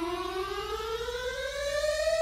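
Eurorack synthesizer oscillator tone with several overtones, its pitch gliding smoothly and slowly upward as an Intellijel Quadrax function generator patched to the oscillator's one-volt-per-octave input sweeps it.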